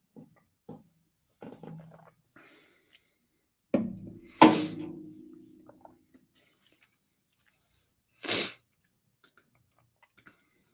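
A quiet pause with a few faint clicks. About four seconds in comes one sudden loud vocal burst from a person, and a short hissing burst follows a little after eight seconds.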